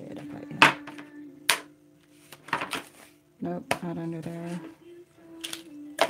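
Clinks and knocks of brushes and studio tools being handled and moved on a work table: three sharp knocks, about half a second in, a second and a half in, and near the end, over a steady low hum.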